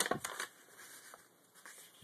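A sheet of computer paper being folded and creased by hand: a brief rustle at first, then faint handling with a few soft crackles.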